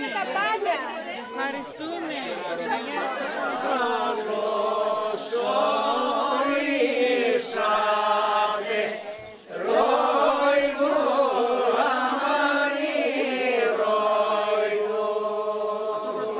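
A mixed group of men and women singing a song together without instruments, in long held notes, with a brief pause about nine seconds in.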